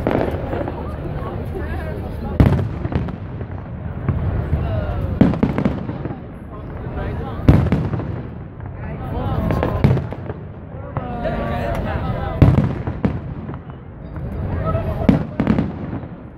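Aerial firework shells bursting in sharp bangs, about eight of them, every two to three seconds, over the chatter of a watching crowd.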